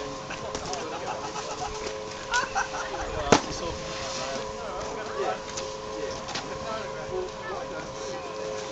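Chairlift running with a steady mechanical hum, faint distant voices and chatter over it, and one sharp clack a little over three seconds in.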